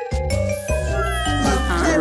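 Children's song music, with a cartoon cat meowing once near the end.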